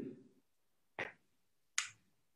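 Two brief, sharp mouth noises from a performer on a video call, about a second apart, with the line cut to dead silence between them.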